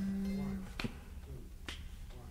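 A low steady hum that stops about two-thirds of a second in, then two sharp finger snaps a little under a second apart, keeping a slow beat in a quiet pause.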